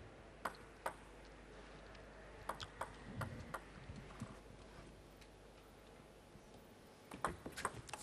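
Table tennis ball clicks in a quiet arena: a few scattered bounces early on, then near the end a quick run of about five clicks as a serve is struck and the ball bounces on the table. The serve clips the net and is called a let.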